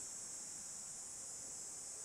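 Faint, steady high-pitched drone of insects, typical of crickets in summer woods.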